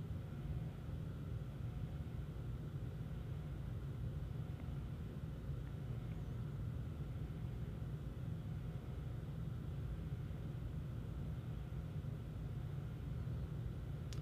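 Quiet, steady low hum of room noise with no distinct events.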